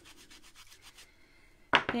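Quick, light rubbing strokes on a craft tabletop, about ten a second, lasting about a second. Near the end comes a sharp knock.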